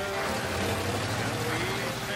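A singing voice from a music score, held notes gliding in pitch, over the steady low engine running of an old pickup truck pulling away.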